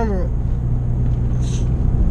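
Honda Civic Type R EP3's four-cylinder engine and exhaust heard from inside the cabin while cruising: a steady low drone over road rumble. A short hiss comes about one and a half seconds in.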